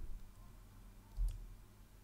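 Faint clicks of a computer keyboard key being pressed to run a command, with a soft low thump about a second in, over a steady low hum.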